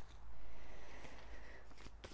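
Faint, soft rustle of paper seed packets being handled: one laid down on the bench, another picked up.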